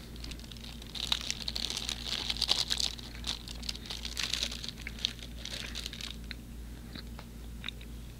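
Close-miked chewing of a soft chocolate-caramel stroopwafel: a run of sticky mouth clicks and smacks from about a second in, thinning to a few isolated clicks near the end. A steady low hum runs underneath.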